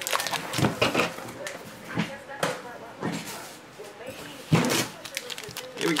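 Cardboard trading card box and a foil card pack being handled on a table: a scatter of sharp taps, knocks and rustles, the loudest knock about four and a half seconds in.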